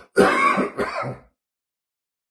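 A man's rough cough, a short run of two or three coughs lasting about a second and muffled by a fist held to the mouth. It is the cough of the illness he says has been getting a little worse.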